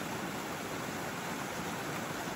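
Small stream cascade pouring over rock ledges into a shallow pool: a steady rush of falling water.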